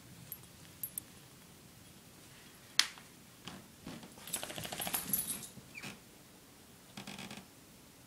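Metal clip of a dog's collar clicking as it is fastened, with a sharp snap about three seconds in, then a fast metallic rattle of the collar's fittings as the dog moves, from about four to five and a half seconds in and again briefly near the end.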